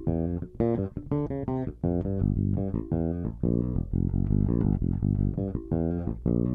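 Electric bass guitar playing alone, fingerstyle: a bass line of short plucked notes, many repeated, at an even pace.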